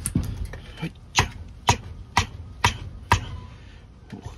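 Five sharp knocks at about two a second, each with a brief ring. They are blows struck to work a badly bent Mora knife loose from the wood it is stuck in on a chopping block.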